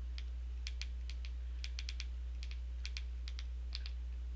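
A run of about fifteen light, irregular clicks of keys or buttons being pressed, over a steady low electrical hum.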